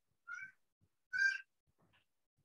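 Two short, high-pitched animal calls, less than a second apart.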